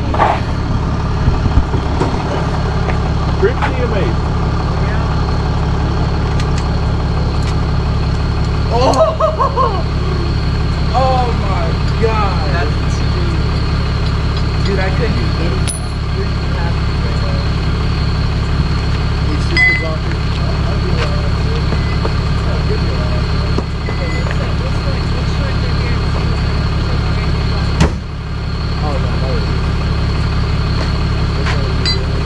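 Tow truck engine idling, a steady low hum throughout, with faint voices in the background about nine to thirteen seconds in.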